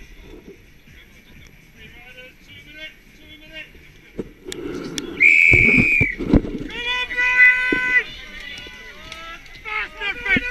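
Start whistle for a cyclocross race: one long, steady blast of about a second, roughly five seconds in, over quiet chatter from the riders on the grid. Long shouts and cheers follow as the pack sets off, with wind and knocks on the moving camera.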